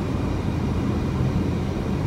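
Steady low rumble of a car driving at town speed, heard from inside its cabin: engine and tyre noise.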